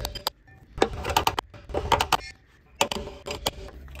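Hammer tapping on a metal rod held against a Land Rover Discovery's starter motor and solenoid: quick metallic strikes in small clusters about once a second. This is the hammer trick to free a starter that has stopped cranking.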